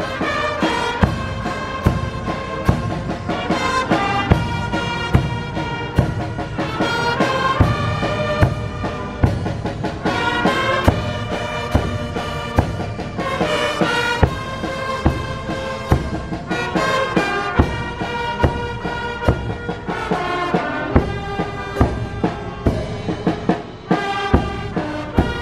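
Brass band music: horns playing a slow melody over a steady, evenly spaced drum beat.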